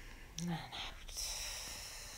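A woman's short, soft vocal sound, then a long breathy hiss that slowly fades away.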